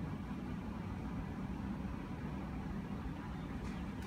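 Steady low background rumble with a faint hiss and no clear events.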